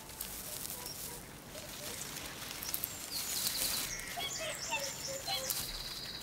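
Small songbirds chirping and giving quick high trills over a faint outdoor background, the calls busier in the second half.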